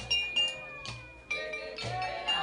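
Marimba ensemble playing: mallets strike the wooden bars about every half second, and each note rings on.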